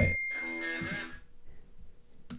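A short high bell-like ding, then about a second of electric guitar chord from the opening of a rock song, which cuts off abruptly.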